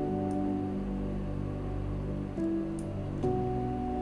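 Soft ambient background music with held, sustained chords that change every second or so.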